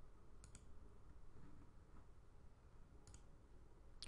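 Near silence: faint room tone with two soft computer-mouse clicks, each a quick pair, about half a second in and again about three seconds in.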